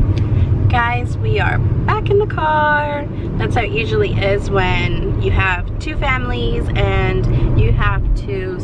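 A woman talking inside a car, over the car cabin's steady low rumble of engine and road noise.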